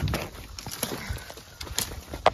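Running footsteps on a woodland floor, feet crunching and thudding on dry leaf litter and twigs in an uneven rhythm, with one sharper hit at the very start.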